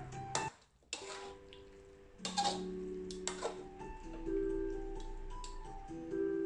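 Background music, a light melody of held notes over steady low tones, that drops out briefly about half a second in. A few sharp clicks sound through it, the strongest two a second apart in the middle.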